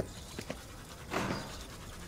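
Toothbrush scrubbing teeth in short strokes, with one louder, longer scrub just after a second in.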